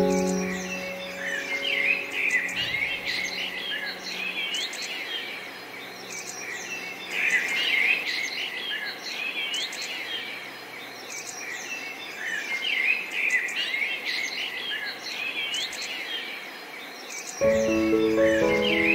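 A chorus of many birds chirping and singing, with quick rising and falling calls. A held piano note fades out over the first few seconds, and piano music comes back in near the end.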